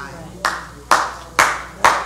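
Four sharp hand claps, evenly spaced about half a second apart, each followed by a short room echo.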